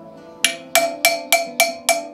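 Coppersmith's small hammer tapping a chisel into a thin metal plate to engrave a pattern: a steady run of sharp strikes, about three or four a second, each with a short metallic ring, starting about half a second in.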